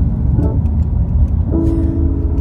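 Low rumble of a car on the move, heard from inside the cabin. About one and a half seconds in, music with sustained notes comes in over it.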